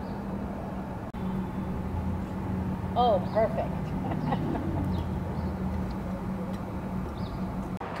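Street background with a steady low hum and a brief high-pitched call about three seconds in.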